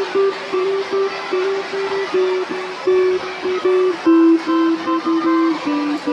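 Electric guitar played through a Peavey combo amplifier: a single-note melody, the notes changing quickly one after another.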